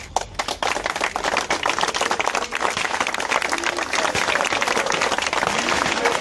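A crowd applauding, with a few first claps about half a second in quickly swelling into steady applause.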